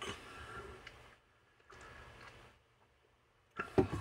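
Quiet room tone: a faint low hiss that cuts out to dead silence twice, as if gated, with a brief faint sound just before speech returns near the end.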